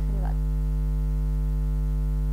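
Steady electrical mains hum, a constant low buzz with a ladder of overtones, running through the studio recording with only a faint trace of voice just after the start.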